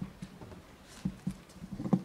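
Microphone handling noise as a boom-arm microphone stand is adjusted: a few irregular low thumps and knocks carried through the microphone itself, the loudest cluster near the end.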